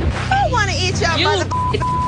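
A censor bleep, a steady high pure tone, cutting in twice near the end over arguing women's voices: a short bleep, then a longer one, masking swear words.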